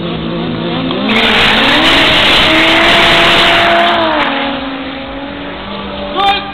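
Two drag-race cars, a 3-litre Toyota Chaser and a Toyota MR2, launch off the start line at full throttle. The engines rise in pitch as they accelerate, stay loud for about three seconds, then fade as the cars run away down the strip.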